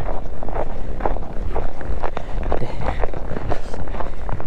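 Boots crunching on snow over lake ice at a walking pace, about two steps a second, with heavy wind rumble on the microphone.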